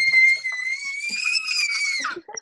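Baby's high-pitched squeal, one long held shriek that wavers slightly and cuts off near the end.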